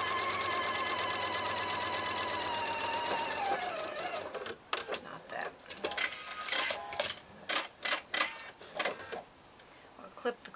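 Electric home sewing machine stitching at a steady speed, slowing and stopping about four seconds in. Then a run of sharp clicks and rustles as the fabric is handled and tools are picked up.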